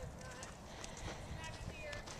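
Faint, dull hoofbeats of a horse trotting on sand arena footing, just after a downward transition from canter.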